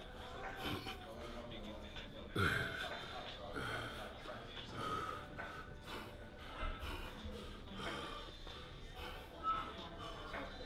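A man's forceful breaths and snorting exhalations while flexing and holding bodybuilding poses, with the loudest puffs about two and a half seconds in and again near the end.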